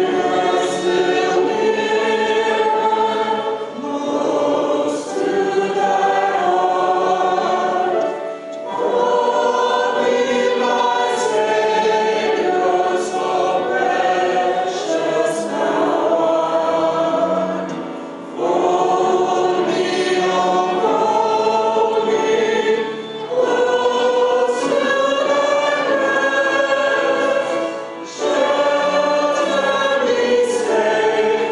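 Small mixed-voice church choir of men and women singing a hymn in harmony, line by line, with brief breaths between phrases.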